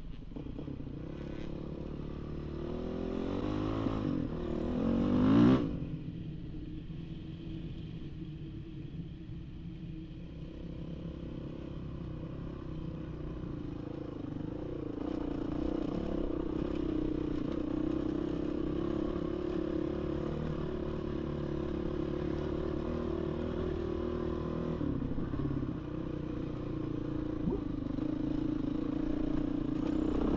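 Dirt bike engine accelerating, its pitch rising to a loud peak about five seconds in and then dropping off suddenly, after which it runs on steadily.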